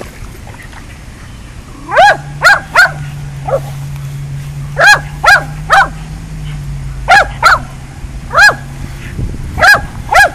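A small dog barking in quick clusters of two or three, about ten sharp yaps in all, each rising and falling in pitch, while it stands in the water looking at a ball floating out of reach.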